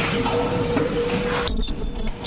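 Paper bowl forming machine running: steady mechanical clatter with a constant mid-pitched whine. The high end briefly drops out near the end.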